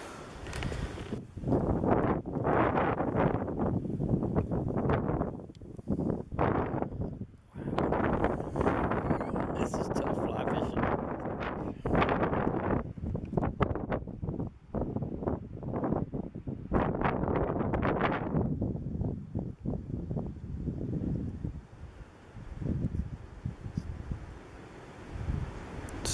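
Wind buffeting the microphone in irregular gusts, a few seconds each with short lulls between, with leaves rustling.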